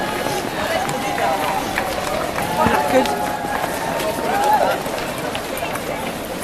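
Many runners' footsteps going past on paving, mixed with people's voices and calls.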